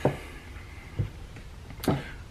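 Quiet room tone with a soft, low knock about a second in and a short, sharp sound near the end.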